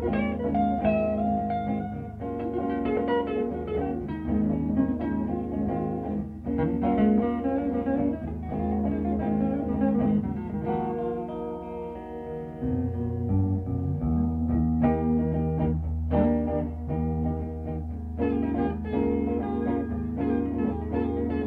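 Instrumental band music led by guitars playing picked notes and chords, with sustained low notes underneath and no singing.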